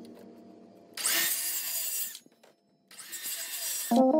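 Circular saw cutting a sheet of material in two short bursts of about a second each, with a sharp break between them.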